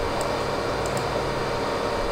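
Steady low rumbling noise from a subwoofer reproducing the pink-noise measurement signal while its level is being set.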